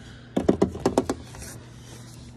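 A rhinoceros beetle clattering against the glass of its tank and the sticks inside it. Its hard shell, legs and wings make a quick run of about eight sharp clicks and taps in under a second.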